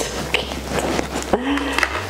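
Clear plastic eyelash packaging being unwrapped and opened by hand, with scattered crinkles and small clicks of the plastic case. A short vocal hum comes about one and a half seconds in.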